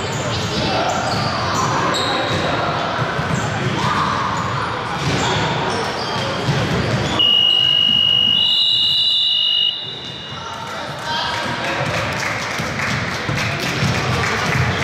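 Basketball bouncing on a hardwood gym floor amid children's and spectators' voices echoing in a large hall. About halfway through, a loud, shrill steady tone sounds for about two and a half seconds, with a second, higher tone joining before both cut off together.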